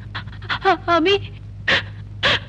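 A person taking heavy, audible breaths, with a few soft murmured syllables in between, over a low steady hum on the soundtrack.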